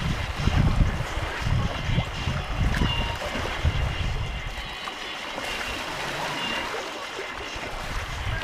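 Water rushing and splashing along the wooden hull of an outrigger sailing canoe under way. Irregular low gusts in the first half fade out about halfway through, leaving a steady hiss of water.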